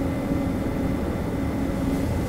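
Steady low mechanical rumble with a constant hum, like an engine or motor running in the background.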